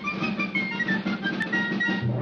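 Orchestral opening title music for a cartoon: a high held melody line, with a note change about one and a half seconds in, over a light lower accompaniment.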